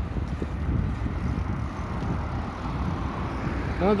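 Steady low wind rumble on the microphone of a camera carried on a moving bicycle.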